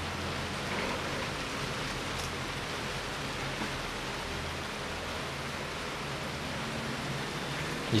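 Steady hiss of background noise with a faint low hum, even and unchanging throughout.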